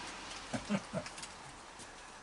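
A raccoon making three or four short, quick calls about half a second in, with a few faint clicks and a low steady hiss behind them.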